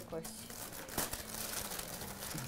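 Gift wrapping crinkling and rustling as a package is pulled open by hand, with one sharper crackle about halfway through.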